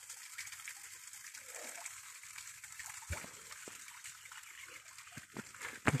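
Faint steady outdoor hiss with a few soft clicks or snaps about three seconds in and again after five seconds.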